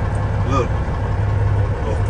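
Semi truck's diesel engine idling, a steady low rumble heard inside the cab. A short vocal sound comes about half a second in.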